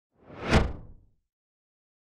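A single whoosh sound effect for a logo reveal, swelling to a peak about half a second in and fading out within the first second.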